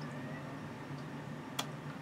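Quiet room tone with a faint steady low hum and a single short click about one and a half seconds in.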